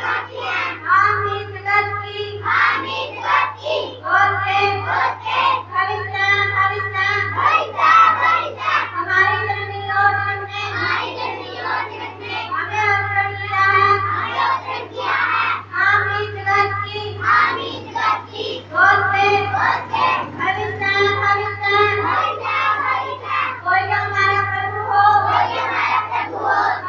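Two girls singing a song together into stage microphones, in phrases of a few seconds with held notes, over a steady low hum.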